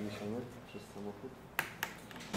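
Low, murmured voices in a small room, then two sharp clicks close together near the end.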